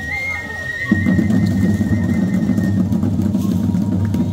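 A long, steady whistle blast held on one high note for nearly three seconds, over drum-led band music that comes in strongly about a second in.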